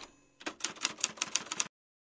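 Typewriter keystroke sound effect: a quick run of about a dozen key clicks, starting about half a second in and cutting off suddenly after just over a second.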